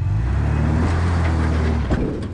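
Toyota Land Cruiser's engine running with a steady low drone as the truck crawls slowly over rock on an off-road trail.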